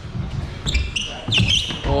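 Irregular dull thuds of shoes and hands striking hollow plywood parkour walls as a climber scrambles up and over them.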